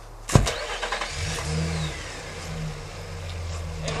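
A single loud thump, then about a second in a Nissan Frontier pickup's engine starts and settles into a steady idle.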